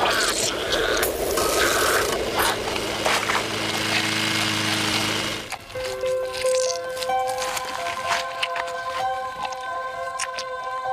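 Wet, squelching gore sound effects of tearing flesh over a low steady drone for about five and a half seconds, then they stop abruptly and long held notes of the film score take over.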